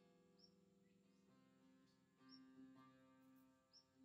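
Monochord played softly, its strings ringing together as a faint, sustained drone full of overtones; a new tone swells in about two seconds in.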